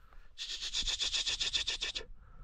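A hunter's rapid hissing "či-či-či" call urging hounds on through the brush, a fast even run of about nine sharp hisses a second starting about half a second in.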